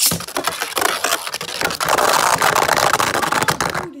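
A Beyblade Burst top ripped from its launcher, then spinning very fast on its plastic tip and scraping and rattling across the plastic stadium floor in a dense stream of tiny clicks, getting louder about halfway. The sound cuts off suddenly near the end as the top flies out of the stadium for a ring-out finish.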